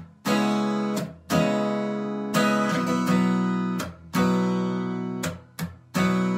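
Acoustic guitar strummed without singing: full chords struck about once a second, each left to ring and then damped briefly just before the next.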